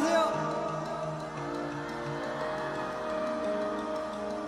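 Live stadium concert audio: a performer's voice over the microphone at the start, then the backing music's chords held steadily.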